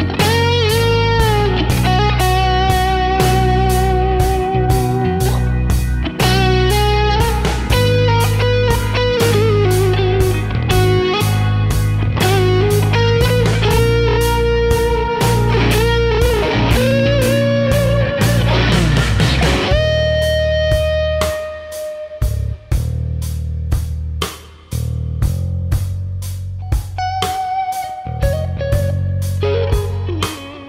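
Electric guitar, a PRS SE Silver Sky through a Universal Audio Dream '65 amp pedal with its pedals, playing lead lines full of string bends and vibrato over a backing track with drums. About twenty seconds in a bend lands on a long held note, and the backing thins for the rest of the stretch. The tone is vintage-y.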